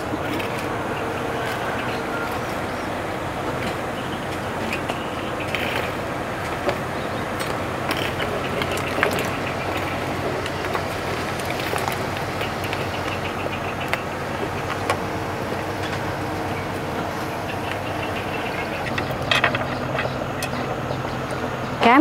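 Steady hiss of cooking on a gas stove: a pot of water at a rolling boil beside a wok of braising fish. A few light knocks come as chunks of sweet potato and yam are slid in from a bamboo basket with a ladle.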